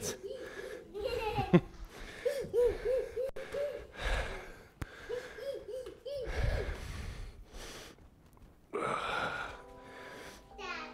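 Laughter in short, high-pitched bursts of about four a second, twice, mixed with breathy, wheezy breathing. A couple of low thuds can be heard, about a second in and again past the middle.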